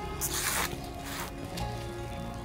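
Soft background music with held notes; about a quarter of a second in, a brief scraping rustle as a flat metal scraper scoops loose potting mix off the heap.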